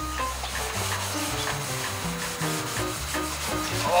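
Scotch-Brite pad scrubbing wet bare steel on a car body, a steady rubbing scrub as a rust-treating wash is worked into the surface rust. Background music plays faintly underneath.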